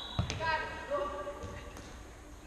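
A futsal ball struck once with a thud, followed by players' shouted calls, echoing in a large sports hall.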